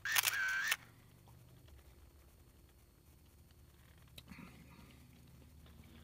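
A camera shutter-and-flash sound effect lasting under a second at the start, marking an edit transition, then near silence.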